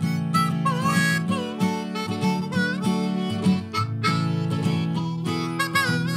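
Harmonica played with cupped hands leads over acoustic guitar accompaniment in a folk-gospel tune. Several harmonica notes bend up and down.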